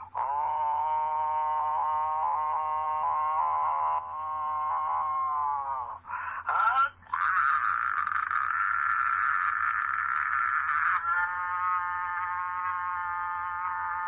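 Long sustained droning tones, each held for several seconds, one sliding down in pitch as it ends about six seconds in. From about seven to eleven seconds in the tone turns harsher and hissier. A steady low hum runs underneath.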